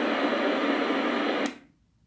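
Homemade regenerative airband receiver's speaker hissing with static, then cutting off suddenly about one and a half seconds in.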